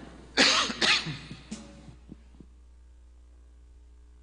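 A person coughing: two sharp coughs close together, then a fainter one about a second later, followed by two soft knocks. A low steady hum lies under it.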